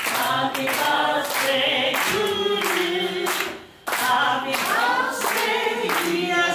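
A group of people singing together without accompaniment, led by a woman on a microphone, with hands clapping along. The singing breaks off briefly about three and a half seconds in, then carries on.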